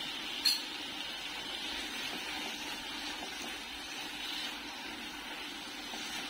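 Grated beetroot halwa sizzling steadily in melted fat in a frying pan, with a single short tap about half a second in.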